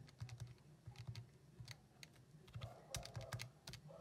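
Buttons of a handheld scientific calculator being pressed: a run of faint, light plastic clicks at an uneven pace as numbers are keyed into its equation solver.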